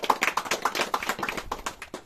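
A small group of people clapping: a quick, uneven patter of sharp claps.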